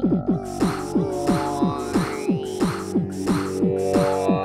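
Lo-fi electronic techno music: a fast run of short synth notes that each drop in pitch, over a steady droning chord, with hissy hi-hat-like strokes on the beat.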